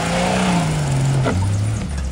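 Jeep Wrangler YJ engine revving up under load as it climbs a dirt mound. The revs peak about half a second in, then ease off as the driver lets off over the top, settling to a lower steady note just past halfway, with a short click as it drops.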